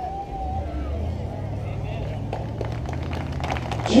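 A steady low hum, with faint voices in the background and a few light clicks.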